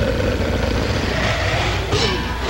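Sci-fi craft engine sound effect: a steady low rumble with a hissing wash over it.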